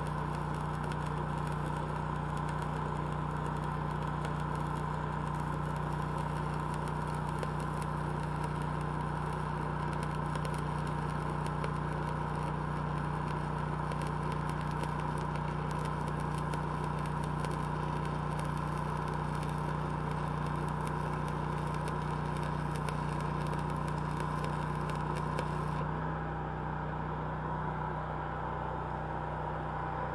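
Stick-welding arc on a 7018 electrode crackling steadily as a fillet weld is run, over the steady running of the Lincoln Ranger engine-driven welder's engine. The arc breaks off about four seconds before the end, leaving the engine running on its own.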